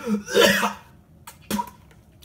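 A man coughing hard into a plastic bucket, a long rough cough at the start and a short sharp one about one and a half seconds in, from the burn of a raw jalapeño pepper.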